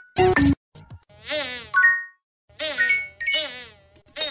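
Digitally distorted logo-intro audio: a short loud blip, then two buzzy, wavering pitched sounds, with a moment of silence between them about half-way through.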